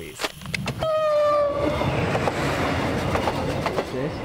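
A passenger train's horn sounds once for about a second, dropping slightly in pitch, then the train runs past with a steady rush of wheels on rail and a clatter of wheel clicks.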